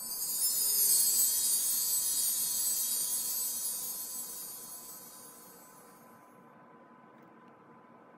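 A high, bright shimmering sound effect, like a magic chime sparkle, comes in suddenly at the start and fades away over about five seconds.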